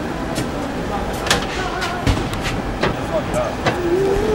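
Steady background noise of a large, echoing concert arena during set-up, with faint distant voices and scattered sharp clicks and knocks, the loudest about a second in.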